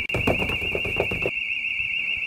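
An electronic alarm sounding a continuous, warbling high-pitched tone. Over the first second or so there is a clatter of rustling and knocks.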